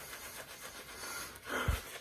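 Shaving brush swirling lather over two days of beard stubble: a soft, steady, scratchy swishing of bristles on whiskers, with a breath taken near the end.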